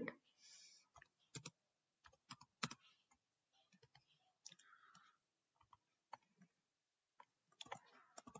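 Faint, irregular keystrokes on a computer keyboard: scattered single clicks with gaps between them as code is typed.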